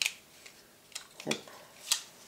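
Injection-moulded polystyrene hull halves of a 1:48 scale model kit clicking and tapping together as they are dry-fitted: about four sharp plastic clicks.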